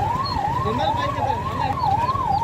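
Electronic vehicle siren, its pitch rising and falling about twice a second, over a steady low background rumble.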